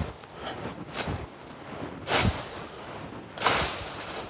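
Long-handled pruning hook slashing upward through hornbeam shoots: a series of swishing, rustling cuts a little over a second apart, the last one the longest.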